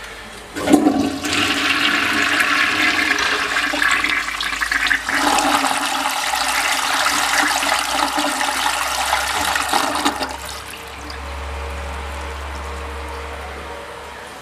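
Toilet in a restroom stall flushing. It starts sharply about half a second in, water rushes loudly for about ten seconds, and then it drops to a fainter low hum.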